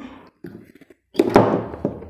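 A spring-terminal lantern battery handled on a wooden tabletop: a few faint small sounds, then a sudden thunk a little over a second in as the battery is laid down, dying away within about half a second.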